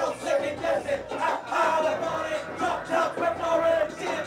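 Club crowd shouting and chanting, with longer held calls in the second half.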